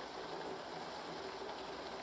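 Quiet steady hiss with a faint low hum: the room tone of a film soundtrack played back on a screen.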